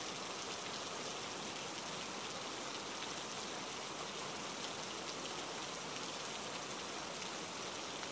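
Steady rain falling, an even hiss that holds at the same level throughout.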